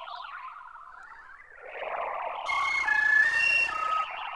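Contemporary music for flute and electronic tape: a wavering, breathy band of sound swells. From about two and a half seconds in, a noisy wash comes in, with short steady high notes stepping from pitch to pitch.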